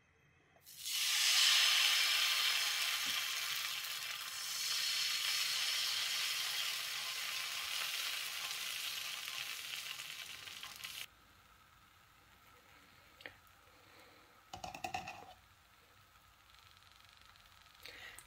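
Dosa batter sizzling on a hot flat griddle pan as it is poured and spread in circles with a ladle. The sizzle starts loud, slowly weakens, and cuts off abruptly about eleven seconds in, leaving a short faint sound a few seconds later.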